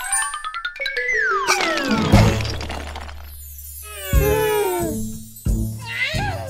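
Cartoon sound effects for a toy block tower toppling: a rising run of notes, then a falling whistle-like glide and a crash about two seconds in, followed by a few sliding-down musical notes.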